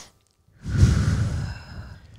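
A person taking one deep belly breath close to a headset microphone, a breathy rush with a low rumble of air on the mic that starts about half a second in and fades over about a second.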